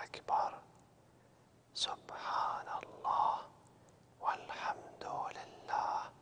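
A man whispering the Arabic tasbihat of the prayer ('subhanallah wal-hamdulillah wa la ilaha illallah wallahu akbar') in three short runs with pauses between them.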